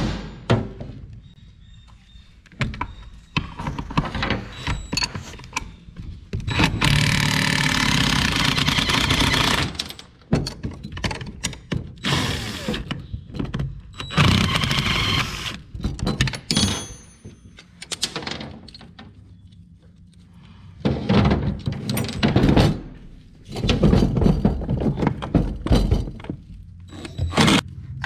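Tool and handling noise as a tractor seat's armrest is taken off: scattered clicks and knocks, with several longer bursts of cloth rustling as a jacket brushes against the microphone.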